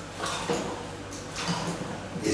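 A plastic hand pump on a water bottle being worked, giving a few soft clicks as it pushes water into a rubber balloon.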